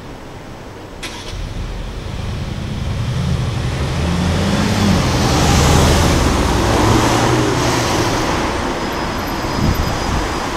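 Car engine pulling away and accelerating past, its pitch rising and then easing, with tyre noise that builds to its loudest around the middle and then fades slowly. A faint click about a second in.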